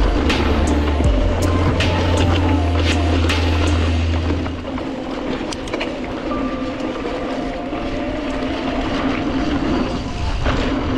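Mountain bike rolling along a dirt singletrack: tyre noise on the dirt with sharp clicks and rattles from the bike over bumps. Heavy wind rumble on the microphone in the first half cuts off about halfway through.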